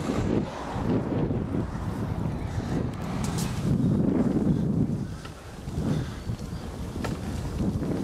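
Wind buffeting the microphone of a camera carried on a moving bicycle: a low, uneven rumbling rush that drops away briefly a little past the middle, then returns.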